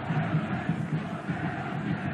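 Stadium crowd noise from a football match, a steady continuous din of fans, possibly with chanting, heard through the TV broadcast sound.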